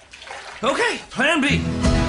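Two short rising-and-falling vocal sounds, then a low, sustained music chord that comes in about one and a half seconds in and rings on, fading out: the closing sting of the film trailer.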